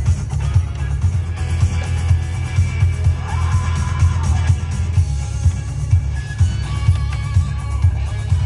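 Music from an FM station playing through a 2012 Volkswagen Beetle's standard in-dash audio system, inside the cabin. It has a strong, punchy bass beat.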